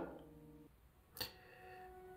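A single small click from a stainless-steel safety razor being handled, a little over a second in, followed by a faint lingering ring. The rest is near silence.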